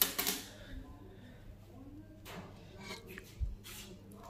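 Aluminium cooking pot with a steamer plate being lifted off the stove and set down: a sharp metallic clank at the start, then handling rattles and a dull thump near the end.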